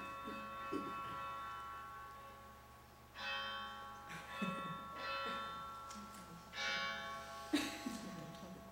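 Monastery bell being struck over and over, each strike ringing on with many overtones. Ringing carries over into the start, then fresh strikes come about three seconds in and every second or two after that.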